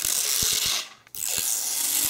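Protective plastic film being peeled off a speaker's clear plexiglass panel: a dry, crackling tear in two long pulls, breaking off briefly about a second in.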